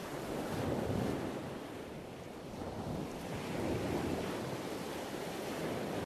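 Ocean surf: a steady rush of waves that swells twice and cuts off abruptly at the end.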